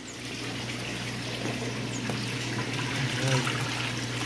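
A hand net scooping small tilapia out of a water tank: water splashing and trickling off the mesh, with a steady low hum underneath.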